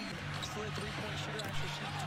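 Basketball game broadcast sound: a ball bouncing on the court over steady arena crowd noise.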